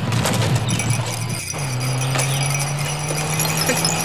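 Small metal pieces clinking and jingling as hands rummage through a metal box, with many quick clinks. A steady low car-engine hum runs underneath and drops in pitch about one and a half seconds in.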